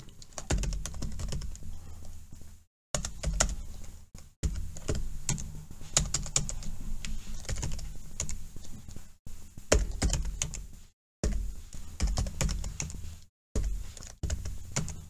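Computer keyboard typing: runs of quick keystrokes, broken by several short silent gaps.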